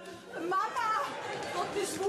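Several people's voices talking and calling out over one another, no clear words.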